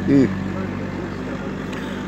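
Steady low motor hum in the background, with a short murmured vocal sound just after the start.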